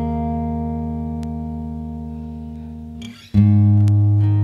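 Guitar playing a song's instrumental intro: a chord rings and slowly fades, then a new chord is strummed a little over three seconds in.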